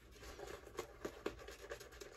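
Shaving brush being worked through lather on the face: faint, irregular scratching of the bristles against the skin.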